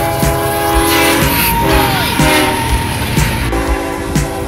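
A diesel locomotive's multi-chime air horn sounding over the rumble of a freight train. A long blast breaks off about a second in, and the horn sounds again near the end.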